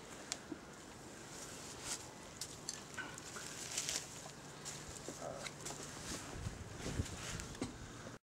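Scattered light clicks, taps and rustles as bow-drill kit is handled and set out on a wooden hearth board and dry leaf litter.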